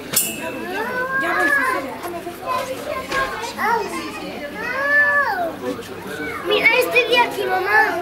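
Children's voices chattering and calling out excitedly, several at once, with shrill high calls about seven seconds in.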